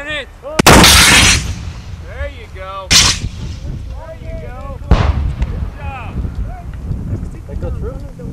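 RPG-7 rocket-propelled grenade launcher firing: one loud blast lasting under a second, followed by two shorter sharp bangs about two and four seconds later.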